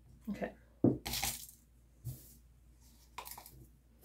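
Crushed glass rattling and sliding against a plastic cup in two short gritty bursts as it is tipped from one cup into another, with a sharp knock just before the first burst.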